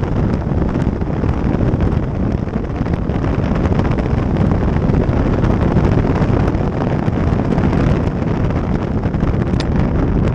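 Airflow rushing past a camera mounted under a Grob 103 glider's fuselage while on aerotow: a loud, steady wind noise on the microphone, heaviest in the low end. A short click near the end as the tow rope releases from the belly hook.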